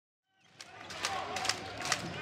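Basketball game court sound fades in after a short silence: a basketball bouncing on the hardwood floor several times, over the murmur of a crowd in the hall.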